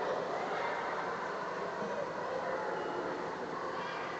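Echoing indoor swimming-pool hall ambience: a steady wash of noise with faint, distant voices carrying through the reverberant hall.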